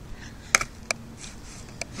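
Skateboard on concrete: the raised end of the board drops and its wheels and deck knock on the pavement, making three sharp clacks, the loudest about half a second in.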